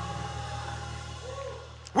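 Soft background music of steady, held chords, with no speech over it.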